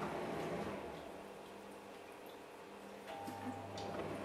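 Quiet room tone with a faint steady electrical hum, a lower hum joining about three seconds in, and a few faint clicks near the end.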